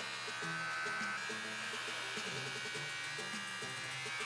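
Electric hair clippers buzzing steadily while trimming the back of a straight lace-front wig. Soft background music with stepping low notes plays under the buzz.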